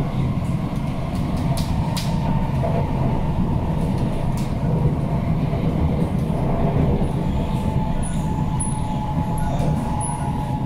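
Inside an SMRT C151C train carriage running at speed: a steady low rumble of wheels on the track, with a faint steady whine and a few sharp clicks about two seconds in.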